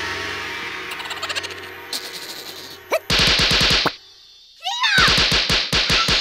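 Cartoon sound effects: a long ringing tone that slowly fades, then two bursts of rapid-fire hits, about ten a second, with a quick rising squeak just before the second burst.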